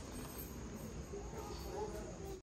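Insects trilling steadily on one high note, faint, over a low background rumble.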